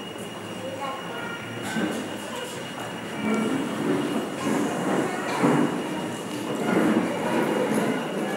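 Indistinct voices and shuffling in a large hall, growing louder from about three seconds in, over a steady high-pitched whine.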